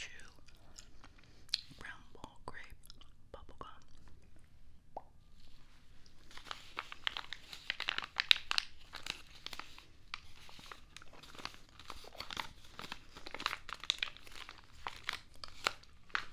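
Close-miked crinkling and tearing of product packaging: a few scattered soft clicks, then from about five seconds in a dense, steady run of crackling and rustling.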